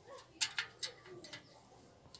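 A few faint, sharp metallic clicks as a spoked bicycle wheel is handled, with a pigeon cooing faintly underneath.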